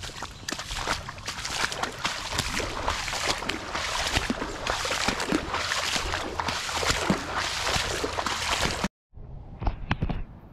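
A person wading through standing floodwater on foot: a dense run of irregular sloshing splashes from the legs moving through the water. It cuts off abruptly about nine seconds in, followed by a few quieter splashes.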